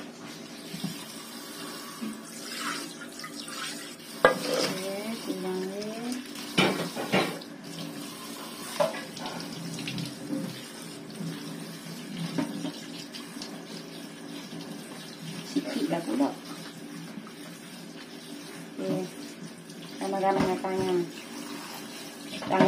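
Kitchen tap running steadily into a stainless steel sink, splashing over blanched papaya flowers in a plastic colander as they are rinsed by hand. A few sharp knocks come a few seconds in.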